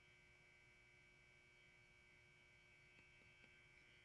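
Near silence: faint steady electrical hum from the recording chain.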